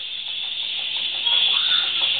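Steady high-pitched hiss of the recording's background noise, with a faint brief voice sound about one and a half seconds in.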